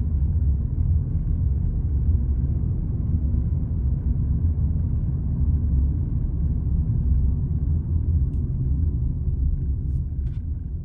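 Steady low rumble of a car's cabin while driving, tyre and engine noise heard from inside, with one faint click near the end.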